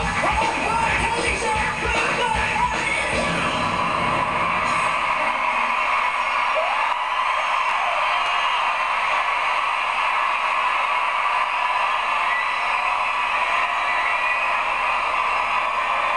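Live pop band and vocals ending about four or five seconds in, then a large arena audience cheering and screaming, with scattered whoops.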